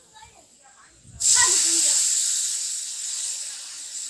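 Wet masala paste poured into hot oil in a kadai of frying potatoes: a sudden loud sizzle about a second in that slowly fades.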